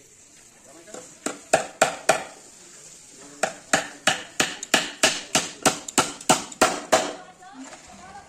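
Hammer nailing plywood panels together: four blows, a short pause, then a steady run of about a dozen blows at roughly three a second.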